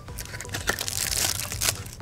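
Clear plastic packaging crinkling and rustling as it is handled, with a few small ticks.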